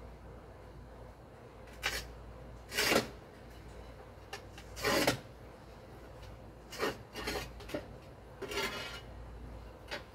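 Intermittent scraping strokes of hand work on a masonry wall and its formwork, about six in all, the longest and loudest about three and five seconds in, over a faint steady low rumble.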